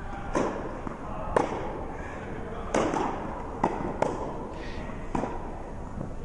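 A tennis ball knocking about five times, roughly a second apart, as it bounces on the court and is struck by a racket; each knock echoes in the large indoor tennis hall.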